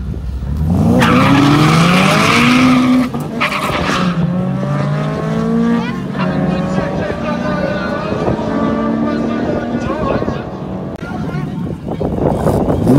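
Two drag cars accelerating hard down the strip, their engines revving up in steps through several gear changes as they pull away. There is a hiss of tyre noise in the first few seconds.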